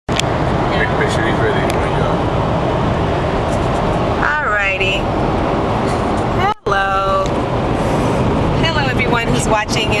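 Steady road and engine noise inside a car cabin at highway speed, with short bits of voices over it. The sound cuts out for an instant about two-thirds of the way through.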